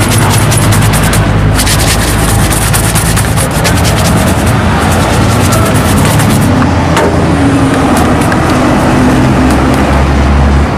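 A vehicle engine running close by on a busy street, a steady low hum over traffic noise. Quick scratchy rubbing strokes, from polish being worked into a leather shoe by hand, come from about a second and a half in until past the middle.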